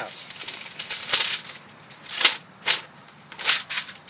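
A paper envelope being opened and the letter unfolded by hand: a run of short, crisp paper crackles and rustles, the sharpest a little past the middle.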